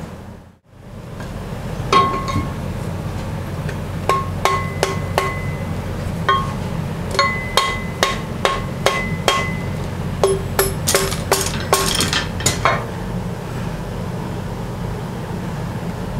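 Rawhide mallet blows on a steel bearing casting and its babbitt pouring fixture, knocking the pour apart. A string of sharp knocks, each with a brief metallic ring, comes about two a second, quickens near the end and then stops, over the steady hum of a shop fan.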